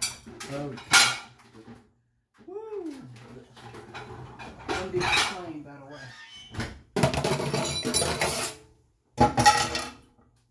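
Pots, pans and metal cooking utensils clattering and clinking at a stovetop, with sharp knocks about a second in and a longer run of clatter near the end.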